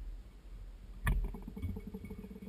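A sharp click about a second in, followed by a short, rapid low rattle, as a fishing hook is handled and set in the metal jaws of a fly-tying vise.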